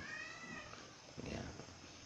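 A faint animal call: one short, high-pitched cry that rises and falls over about half a second near the start.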